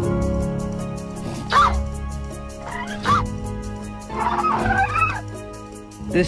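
Sound-effect calls of a young tyrannosaur: two short, gliding cries about a second and a half apart, then a longer wavering call near the end. The calls sit over background music with held tones.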